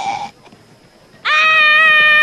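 A small child's long, high-pitched yell held on one steady note for about a second and a half, starting a little past halfway.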